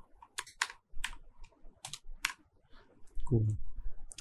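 Typing on a computer keyboard: a handful of separate keystrokes at irregular spacing over the first two and a half seconds.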